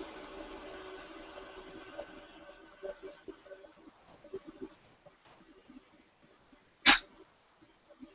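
Faint knocks and rattles of a workpiece being set in a metal-cutting band saw. A steady hum fades away over the first few seconds, and one sharp click comes shortly before the end.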